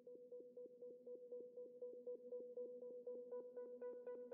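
A faint synthesized electronic tone held on one pitch, pulsing rapidly about eight times a second and growing brighter in its last second.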